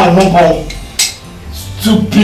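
A single sharp clink about a second in.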